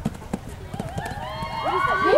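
A horse's hoofbeats on arena sand, then from about a second in several voices whooping in long, overlapping calls that grow louder.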